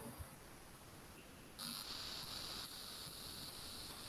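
Near silence for about a second and a half, then a faint steady high-pitched hiss.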